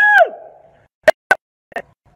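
A man's voice ends on a high, drawn-out note that falls away, followed by a pause and two sharp clicks about a second in, a fifth of a second apart.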